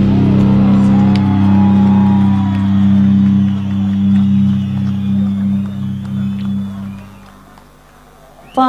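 Live band holding a long, low final chord, with a gliding melody line over it early on. It fades away and is mostly gone about seven seconds in.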